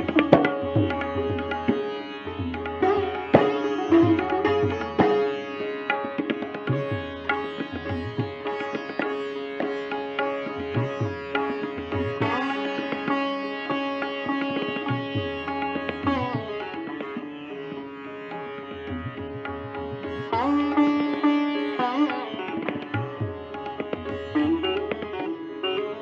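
Sitar playing raga Bhairavi: plucked notes over ringing sympathetic strings, with slow pitch slides (meend) bending notes up and down at several points. Tabla plays underneath with deep bass strokes.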